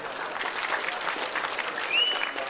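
Audience applauding: a dense patter of many hands clapping, with a brief high whistle near the end.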